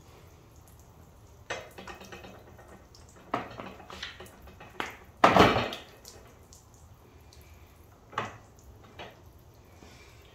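Scattered knocks and clatters as a wet wheel and tyre are handled and turned around on a wheel stand, the loudest a thump about five seconds in, with water dripping.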